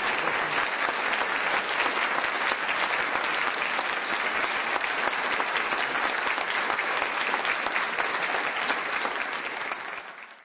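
A large audience applauding, a steady, dense clatter of many hands clapping that begins to fade near the end.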